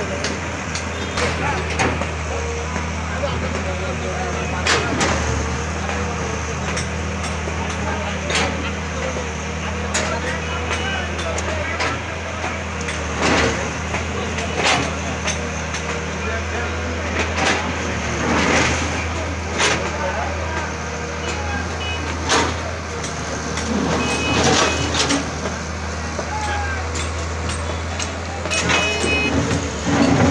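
Hydraulic excavator's diesel engine running steadily while its bucket breaks up a brick-and-concrete building, with knocks and crashes of masonry at irregular intervals.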